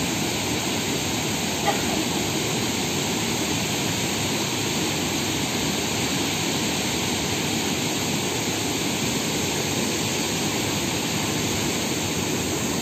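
Steady rush of river water pouring over rocks in rapids, loud and unbroken.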